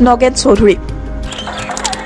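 A man's news narration ends less than a second in, leaving background music with faint scattered clicks.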